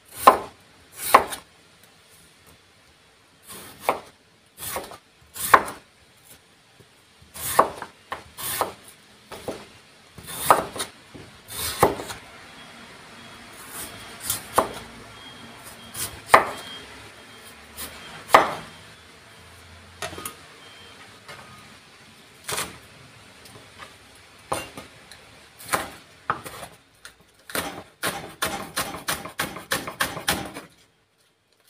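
Wide-bladed kitchen knife slicing peeled potatoes thinly on a wooden cutting board, each stroke ending in a sharp knock on the board, the strokes about a second or more apart. Near the end comes a fast run of chops, several a second, as green onion is chopped on the board.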